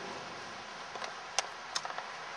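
Steady wind noise around a spinning homemade PVC-pipe Savonius wind turbine, with two sharp clicks about a third of a second apart in the second half.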